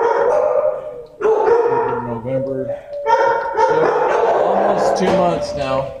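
Several dogs barking in shelter kennels, a loud, continuous din.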